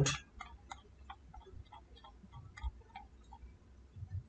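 Computer mouse scroll wheel clicking as a long list is scrolled: faint, irregular ticks, about three or four a second, with a soft low thump a little past halfway.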